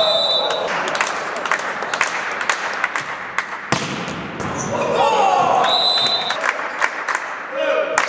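Volleyball rallies in a gym hall: sharp smacks of hands hitting the ball, one loud hit a little before four seconds in, and the referee's whistle twice in short blasts, right at the start and about six seconds in. Players are shouting throughout.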